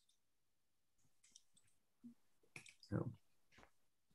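Near silence on a video call, broken by a few faint clicks in the middle, then one short spoken "So," near the end.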